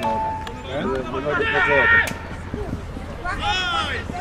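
Men's voices shouting across a rugby pitch during open play: loud calls, one held for about half a second near the middle and another rising and falling near the end, over a low steady rumble.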